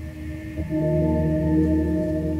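Background music: a held chord of steady tones that swells louder about half a second in.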